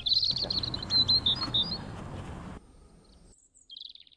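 Small birds chirping in quick high calls: a run of chirps in the first second and a half, then a short burst near the end.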